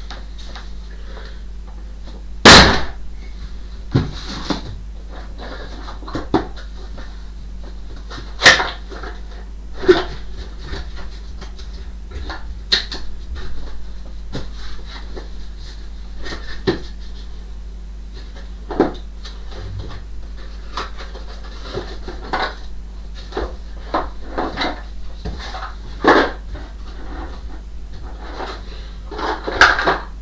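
Irregular knocks, bumps and clatter of stored items being shifted and pulled out of the top compartment of a wooden wardrobe, with the loudest knock about two and a half seconds in. A steady low hum runs underneath.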